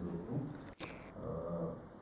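A man's voice making brief, hesitant low sounds between words, with a short dropout in the sound a little under a second in.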